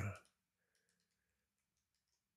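The end of a spoken word, then near silence with a few faint, scattered clicks and a faint steady hum.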